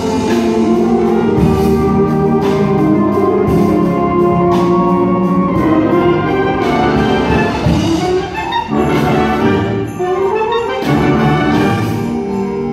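A concert band of brass, saxophones and woodwinds playing a Christmas piece, full sustained chords with percussion striking along. A rising phrase climbs in the ensemble near the end.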